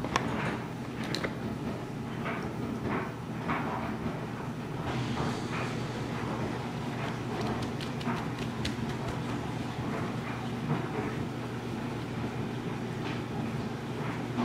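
Paper towel rustling and crinkling as hands blot wet banana slices, with small irregular taps and clicks, busiest in the middle. A steady low hum runs underneath.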